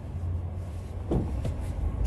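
Low, steady rumble of a running pickup truck, heard from inside its cab.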